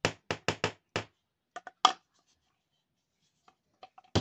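Sharp knocks and clicks of a ridged green toy stick striking a small painted miniature pot as the two are handled, about eight quick knocks in the first two seconds, then a couple of faint clicks near the end.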